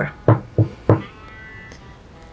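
Three knocks on a door, about a third of a second apart, followed by quiet background music.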